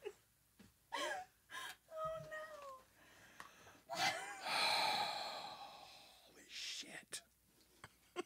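Wordless vocal reactions from two shaken people: a short cry, a falling moan, then a long breathy gasp lasting about two seconds, and another breath near the end.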